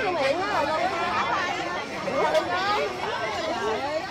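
Several people talking at once, a busy murmur of overlapping chatter with no clear words.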